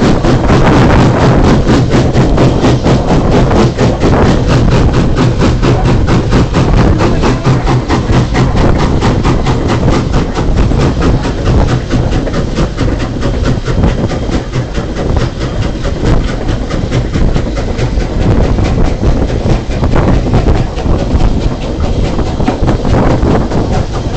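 A train running, a loud, dense clatter with no pauses.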